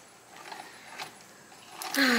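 Faint clicks from handling the metal parts of an antique Singer 27 sewing machine head being reassembled, with one sharper click about a second in.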